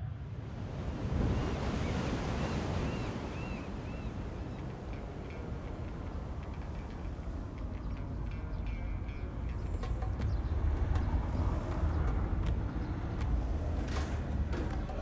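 Sea waves breaking on a rock breakwater, with wind blowing on the microphone. A run of short, evenly repeated high tones sounds over it in the first few seconds.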